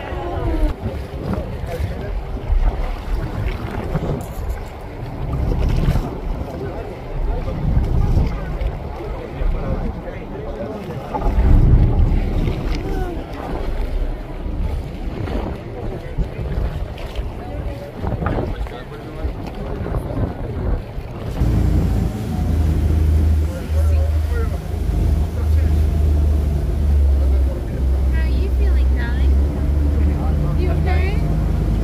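Wind buffeting the microphone over choppy sea; about two-thirds of the way in, the tour boat's engine comes in with a steady low drone that carries on to the end.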